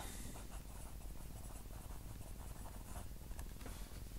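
A pen writing by hand on squared notebook paper: a faint scratching of many short strokes.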